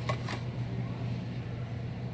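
Steady low store hum, as from ventilation or refrigeration, with a brief faint rustle of handling near the start.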